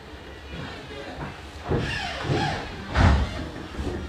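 Thumps and knocks on wooden planking inside a wooden ship's hull, the loudest about three seconds in.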